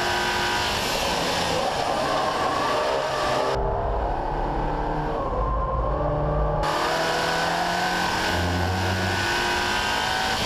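SEAT Leon Cupra 280's turbocharged 2.0-litre four-cylinder engine at full throttle on a race track, its note climbing steadily under acceleration. For a few seconds in the middle the sound turns muffled and bass-heavy, heard through a different in-cabin microphone, before the clearer engine note returns.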